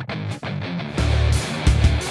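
Rock intro music led by guitar; a heavy beat with deep bass comes in about halfway through.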